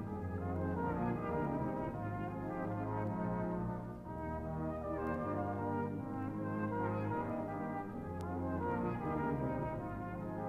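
A brass band playing full, sustained chords over held low bass notes. The sound dips briefly about four seconds in, then swells back.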